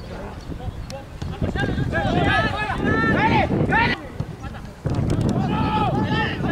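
Shouting voices at a football match: long, drawn-out calls rising and falling in pitch. They start about a second and a half in, break off briefly past the middle, then start again near the end.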